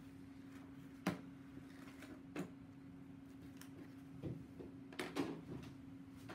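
Sheet of paper being peeled off a tray of marbling size, with light paper rustles and a few sharp clicks as it is handled: one about a second in, another a little over a second later, and a cluster near the end, over a steady low hum.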